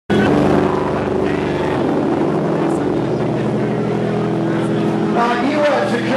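Electric guitar and bass held through loud amplifier stacks: a steady, droning chord sustained for several seconds. A man's voice comes over the drone near the end.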